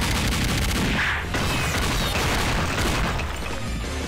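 Sound effects from an animated fight: a dense, continuous rumble and crashing of hurled earth and sand, laid over background music.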